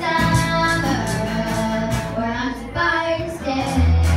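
A small live rock band playing, with a girl singing long held notes over electric guitar, bass guitar and an electronic drum kit. The deep bass note drops out for most of it and comes back near the end.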